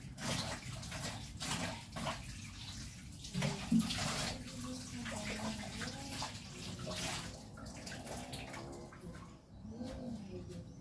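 Tap water running into a stainless-steel kitchen sink in uneven bursts while dishes are rinsed by hand, with a few sharp knocks of crockery.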